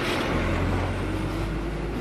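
A motor vehicle's engine running close by: a steady low rumble with a wide hiss over it.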